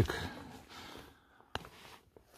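A hand handling the strapped tool kit in a car trunk's plastic underfloor storage niche: faint rustling, then one sharp click about one and a half seconds in.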